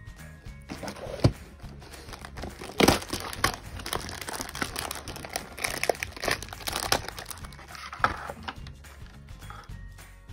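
Cardboard candy box being torn open and its plastic wrapper crinkled, a dense crackling with sharp snaps, the loudest about a second in and near three seconds, over background music.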